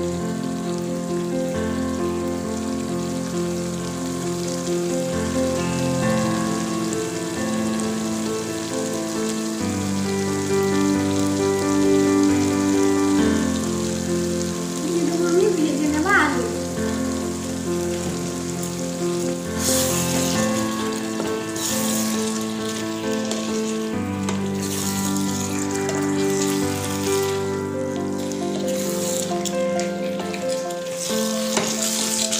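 Chicken curry sizzling in a steel pan while it is stirred with a spatula, under background music of sustained chords. In the second half the sizzling and stirring come in stronger, uneven bursts as fried potato pieces are mixed into the curry.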